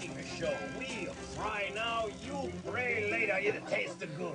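Strange electronic music: warbling tones that glide up and down in arcs, swooping more strongly twice.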